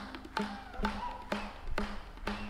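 Live qawwali band playing an instrumental passage with no singing: sharp drum strokes about twice a second over a held low note.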